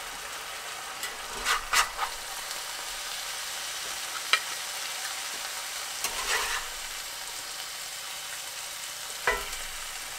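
Halibut and tomato stew sizzling steadily in a cast-iron skillet. A spatula scrapes and knocks against the pan a few times as food is lifted out onto a plate, with the sharpest knock near the end.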